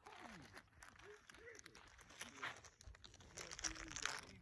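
Faint, distant talking among a few people, with light rustling; no loud shot or other sharp sound.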